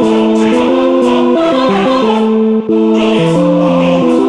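Hardtek electronic track with choir-like vocal chords that move in steps from one held chord to the next. The sound drops briefly about two and a half seconds in.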